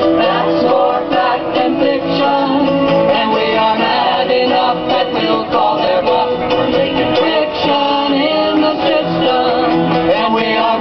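A small chorus of men and women singing a folk protest song together to a strummed acoustic guitar.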